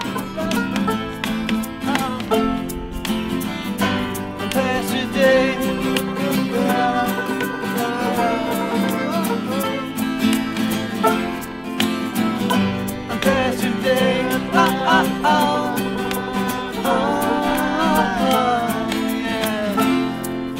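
Small acoustic band playing a bouncy folk-pop instrumental passage with no lyrics. Two acoustic guitars are strummed under a wavering melody line, and a hand shaker keeps time.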